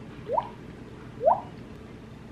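Two mouth-made raindrop 'plunk' sounds, done with the mouth alone without flicking the cheek. Each is a short pop that glides quickly upward in pitch, the two a little under a second apart.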